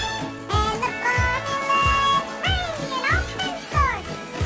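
A country-style jingle sung in a high, sped-up chipmunk voice over a steady beat, the voice swooping down several times near the end.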